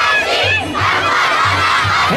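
A crowd of demonstrators, many of them women, shouting a slogan together, a loud massed cry of voices.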